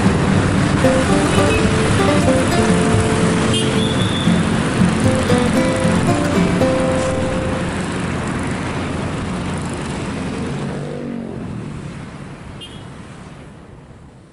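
Street traffic noise mixed with background music, both fading out gradually over the last six seconds or so.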